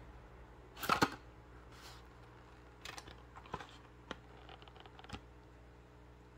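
Light clicks and crinkles of a plastic blister pack and its card being handled and turned in the hand, with a louder rustle about a second in and a few scattered ticks after.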